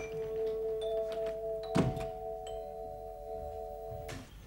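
A doorbell ringing on in one long, steady held tone, with a door thunking shut about two seconds in.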